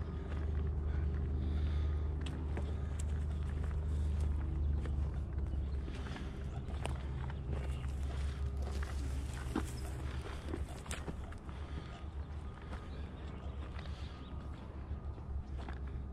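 Footsteps on a dirt and gravel lakeshore path, with scattered crunches and scuffs. A steady low rumble runs under them, heavier in the first half.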